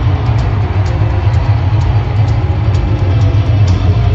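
Live hard rock band playing loud, with heavy bass guitar and drums dominating and cymbal hits about three times a second; no vocals in this stretch.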